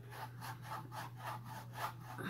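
A paintbrush scrubbing back and forth over a canvas in quick, even strokes, about four or five a second.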